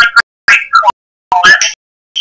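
Fragments of a voice from a recorded radio call-in, chopped into short bursts a few tenths of a second long with dead silence between them, as when a phone or internet call line breaks up.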